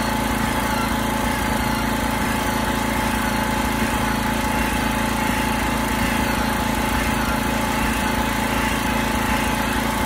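Corded drill spinning a rubber decal eraser wheel against a truck's painted side, running steadily with a constant whine and no change in speed.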